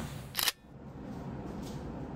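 A single sharp camera-shutter click about half a second in, cutting off suddenly, then a faint steady room hiss.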